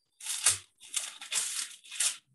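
Rustling, crinkling noise in several short bursts, with no voice in it.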